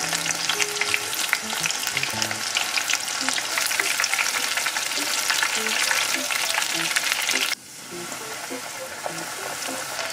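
Panko-breaded shrimp deep-frying in a pot of hot oil: a dense crackling sizzle. It dips suddenly about three-quarters of the way through, then carries on a little softer.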